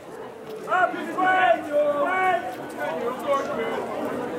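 Voices shouting and calling across an outdoor sports field, loudest in the first half, with no words that can be made out.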